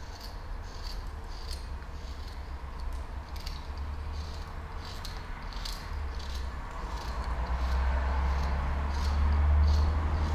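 Flexcut carving knife whittling a small block of wood: short crisp slicing cuts, roughly one or two a second in an irregular rhythm, as thin shavings come off. A low rumble runs underneath and swells near the end.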